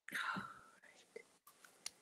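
A person's soft, breathy whisper or exhale without any voiced speech, followed by a few faint short clicks.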